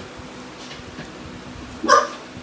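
American bulldog giving one short, loud bark near the end.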